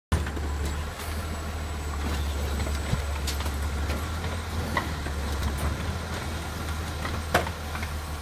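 Automated side-loader garbage truck with its diesel engine running in a steady low drone while the mechanical arm lifts and tips a yard-waste cart, with a few short knocks as the cart is handled.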